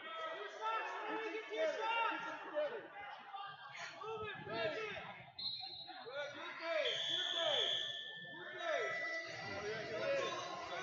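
Several overlapping voices of spectators and coaches calling out and talking around the mat, with a few brief steady high-pitched tones about halfway through.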